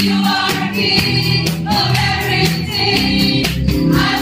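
Gospel praise-and-worship music: a woman sings lead through a microphone, with a congregation singing along over a steady percussion beat.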